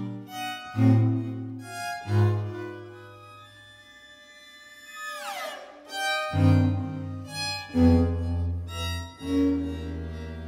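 String quartet (violins, viola and cello) playing an instrumental passage: short low chords, a quieter stretch, a high sliding fall in pitch about five seconds in, then loud sustained low chords.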